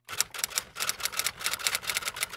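Typewriter keystroke sound effect: a fast, even run of clicks, about ten a second.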